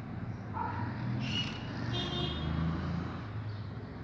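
Outdoor urban background: a steady low rumble of distant road traffic, with a few brief high-pitched sounds in the first half.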